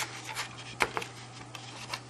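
Scissors snipping through cardstock in a few short, crisp cuts, the sharpest a little under a second in, over a faint steady hum.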